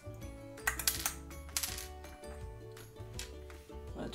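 Small hard plastic LEGO pieces clicking as a Frozone minifigure and its ice-blast piece are squeezed and handled, with several sharp clicks in the first two seconds. Soft background music runs underneath.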